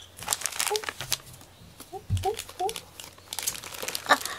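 Plastic packaging crinkling in irregular bursts as wrapped gift items are handled, with a soft thump about two seconds in.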